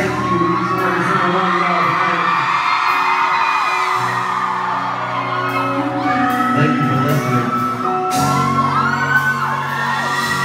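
Live amplified R&B song: a man sings into a handheld microphone over steady bass, with the audience whooping and yelling along.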